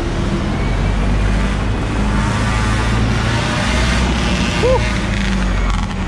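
A city bus's engine running close by in heavy street traffic: a loud, steady low drone with a faint whine above it.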